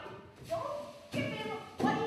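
Speech only: a voice speaking in short phrases.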